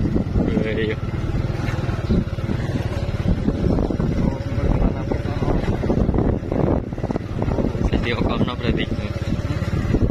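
Motorcycle engine running while riding over a rough, potholed road, with irregular knocks and rumble from the bumps.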